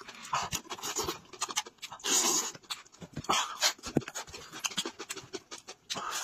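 Close-miked mukbang eating sounds: a man chewing and smacking on roast meat with his mouth open, wet mouth clicks mixed with breathy noise bursts, the loudest about two seconds in.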